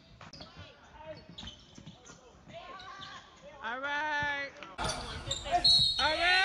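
A basketball bouncing on a hardwood gym floor during play, with scattered sharp knocks. A shout comes about four seconds in, and the sound grows louder near the end.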